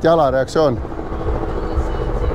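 A voice for the first moment, then a steady low mechanical throbbing drone with a faint steady hum over it.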